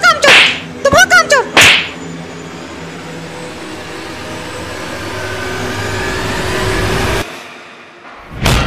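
Cartoon soundtrack sound effects: a few short pitched cries that swoop up and down in the first two seconds, then a noisy whoosh that swells louder for about five seconds and cuts off suddenly.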